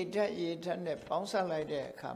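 Speech only: a man giving a Buddhist sermon in Burmese.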